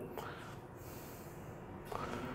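Quiet room tone with a faint, distant voice from the audience, off the microphone.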